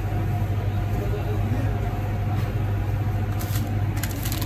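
Steady low machine hum of kitchen equipment, even and unbroken, with faint voices in the background.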